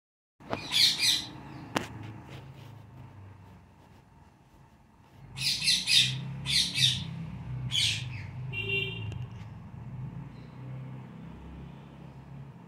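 Rose-ringed parakeets screeching: a pair of harsh calls near the start, then a run of several more from about five to eight seconds, over a low steady hum, with a single sharp click about two seconds in.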